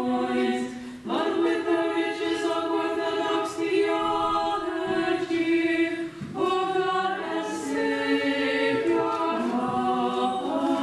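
Small choir of nuns chanting an Orthodox liturgical hymn unaccompanied, with held notes that step from pitch to pitch. The singing breaks briefly about a second in and again about six seconds in.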